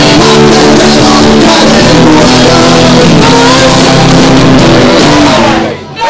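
Live rock band playing loud, with electric guitars, bass guitar and drums, which breaks off suddenly near the end.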